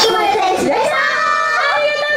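Female Japanese idol group singing a pop song into microphones over backing music, the voices holding and bending melodic lines.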